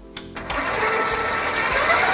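KitchenAid 7-quart stand mixer switched on to medium speed. Its motor comes up about half a second in, then runs steadily as the wire whisk beats cream cheese, eggs and sour cream.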